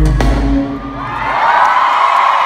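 Live rock band playing a final sung word and a closing hit, its low bass dying away within the first second. Then an arena crowd cheering and whooping, growing louder.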